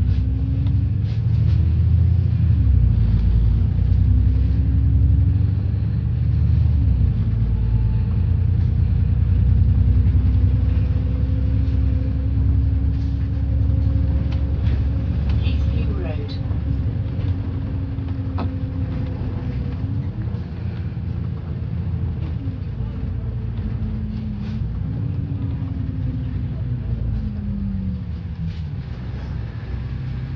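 Double-decker bus running, heard from inside on the upper deck: a heavy low rumble with a drivetrain whine that rises in pitch as the bus pulls away and falls as it slows, several times over, and scattered short rattles.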